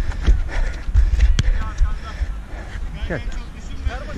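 Footfalls and thumps of a player running on artificial turf, picked up by a body-worn camera's microphone as a low, uneven rumble. There is one sharp knock about a second and a half in, and distant shouts from other players.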